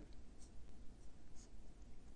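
Faint sound of a felt-tip marker drawing on paper, with two short scratchy strokes, about half a second and a second and a half in.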